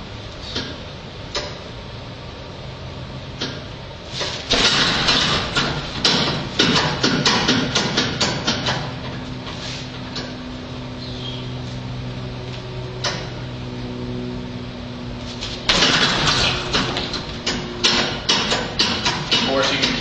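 Two hard shin kicks land on a 100-pound hanging heavy bag, about eleven seconds apart. Each impact is followed by several seconds of rattling as the bag swings on its hanger.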